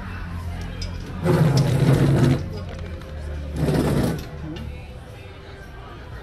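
Café background of music and indistinct voices over a steady low hum, broken twice by loud bursts of noise, the first about a second in and lasting about a second, the second shorter, near the middle.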